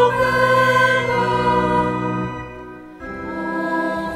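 Sacred choral music: a choir holding long chords. The sound fades away about two and a half seconds in, and a new chord enters at about three seconds.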